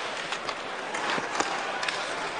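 Ice hockey arena sound during live play: a steady crowd murmur, skates scraping the ice, and a few sharp clacks of sticks and puck.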